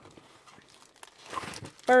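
Plastic mailer envelope crinkling and rustling as a hand reaches inside and draws out its contents, with a louder stretch of crinkling just past the middle.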